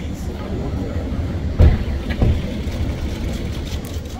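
Steady low rumble of a city street with vehicles idling, broken by two dull thumps a little over half a second apart near the middle.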